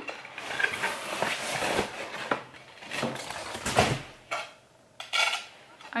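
Ceramic dishes, among them pieces of a serving plate that arrived broken, clinking and scraping against each other as they are handled in a box, with a louder knock about four seconds in.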